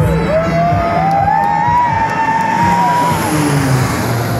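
Single-engine airplane making a low fly-by, its engine loud and steady, with a drawn-out tone that slowly rises in pitch as it comes in close overhead. Music plays at the same time.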